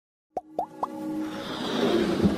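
Animated-intro sound effects: three quick rising plops about a quarter second apart, then a swelling electronic build.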